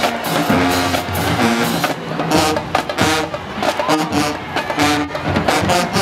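Marching band playing: brass with sousaphones, over a drumline of snare and bass drums hitting sharply in rhythm.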